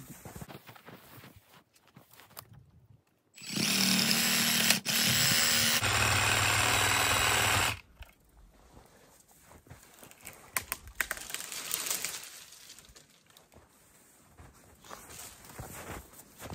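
Reciprocating saw cutting into a small tree trunk for about four seconds, with one brief break near the middle: a hinge cut taken only about sixty percent of the way through. Faint scattered crackling and rustling follow once the saw stops.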